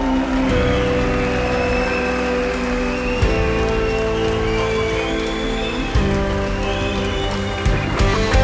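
Live rock band music: electric guitar and bass hold sustained chords that change about three and six seconds in, with a drum hit at each change and another near the end.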